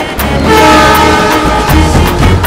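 Tamil film song music: regular drum hits over a steady deep bass, with a held chord of several steady tones sounding from about half a second in for roughly a second.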